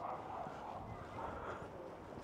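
Quiet outdoor ambience of footsteps on paving, with faint background voices.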